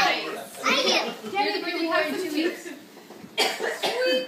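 Indistinct voices of children and adults talking at a party table, with a short cough about three and a half seconds in.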